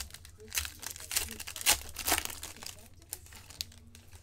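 Plastic-foil trading-card pack wrapper being torn open and crinkled by hand: a run of irregular crackling rips.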